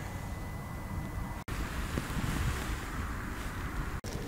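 Wind buffeting the microphone outdoors, a low uneven rumble with a brief dropout about one and a half seconds in.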